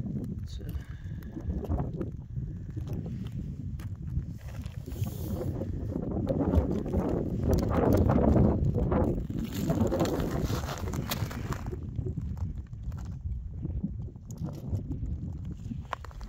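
Wind buffeting the microphone outdoors: a low, uneven rumble that swells to its loudest in the middle and eases off near the end.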